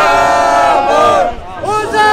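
Demonstrators chanting a slogan, loud voices close by. There are two long, drawn-out shouted phrases with a short break between them, about one and a half seconds in.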